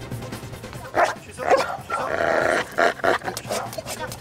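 Belgian Malinois barking several times in short bursts at a box where a hidden person is: the trained alert bark that signals a find in search-and-rescue training.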